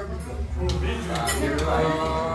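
Crockery and cutlery clinking a few times in a café, over low background chatter and a steady low hum.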